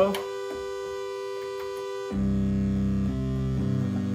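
Moog Grandmother analog synthesizer holding a steady mid-pitched note, then about two seconds in dropping to a much lower and louder bass note as the octave is shifted down, the low notes changing pitch a couple of times.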